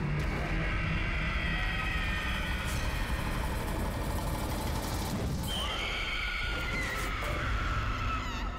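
Horror soundtrack: sustained high tones sliding slowly in pitch over a low rumble. The tones break off about five seconds in, and new tones enter, one of them rising.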